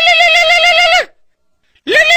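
Electronic doorbell chime ringing: a warbling tone that slides up at the start and down at the end, about a second long. It rings again near the end.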